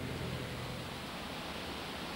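Steady background hiss with no distinct event; a low hum underneath fades out in the first second.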